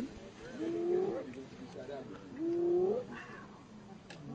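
Hyena calling twice: two drawn-out calls, each held steady and then rising in pitch at its end, one about half a second in and another about two and a half seconds in.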